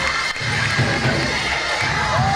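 Live church music during a praise break, with a held tone over a steady low beat, and the congregation cheering and shouting over it.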